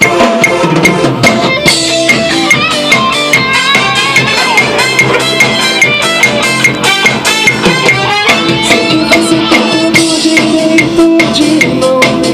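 A band track with a drum kit played in steady time, drum and cymbal strikes about twice a second, under guitar and other pitched instruments carrying a moving melody. A long held note comes in about two-thirds of the way through.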